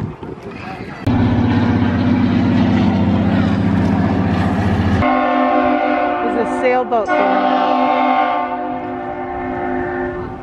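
A loud, deep horn blast starts suddenly about a second in and holds steady. About five seconds in it gives way abruptly to a higher-pitched horn tone, which fades out near the end.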